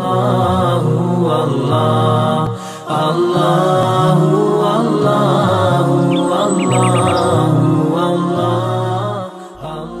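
A man's voice chanting a slow, melodic line, held loud with a brief break about three seconds in and a fade near the end.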